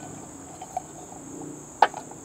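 Crickets chirring steadily, with one sharp knock near the end as the Evernew titanium pot is set down on the folding table.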